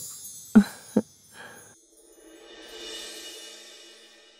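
Dramatic background-score sting: two sharp drum hits about half a second apart, a softer third hit, then a swelling cymbal wash over a low held tone that fades away.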